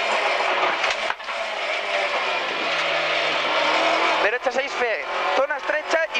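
Rally car engine heard from inside the cabin, working hard under load, with a brief lift about a second in and then held at steady revs. A voice cuts in near the end.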